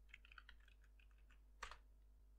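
Faint typing on a computer keyboard as a password is entered: a quick run of light keystrokes, then one louder key press near the end.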